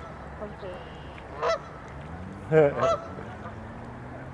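Canada geese honking: a few separate short honks, the loudest a close pair about two and a half seconds in.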